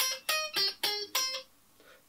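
Electric guitar (a Stratocaster-style), played clean, picking five quick single notes of a keyboard riff moved onto guitar: C, E flat, G, A flat, C, all around C minor. The last note rings briefly before stopping.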